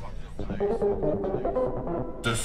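Hard-dance/techno DJ set music in a muffled passage with the treble cut away: synth notes held one after another in steps over a steady low bass pulse.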